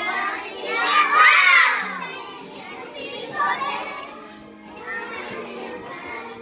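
A group of young children singing together, loudest and highest about a second in, over a faint backing track.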